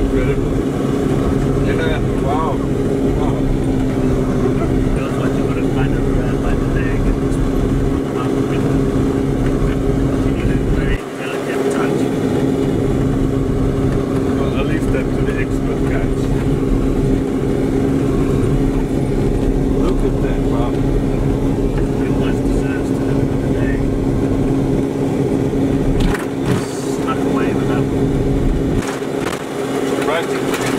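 Engine of an off-road vehicle running at a steady drone, heard from inside the cab while driving a rough dirt track. The low rumble drops away briefly about a third of the way through.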